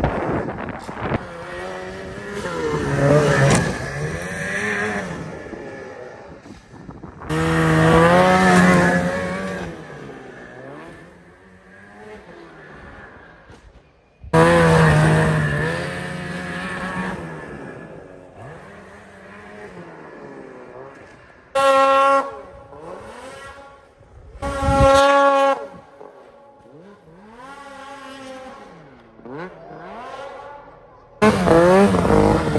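Two-stroke snowmobile engines revving hard and falling back again and again in rising and falling pitch as the sleds ride and jump. The sound breaks off and restarts abruptly several times, with the loudest bursts about a quarter and half of the way in and twice near the three-quarter mark.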